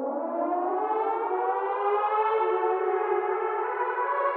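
A siren-like tone that winds slowly up in pitch and then holds steady from about two seconds in, opening the track before the beat comes in.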